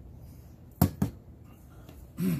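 Two sharp knocks about a fifth of a second apart as the stainless-steel pot of a Stanley Adventure All-in-One Boil + Brew French Press is set down on a table.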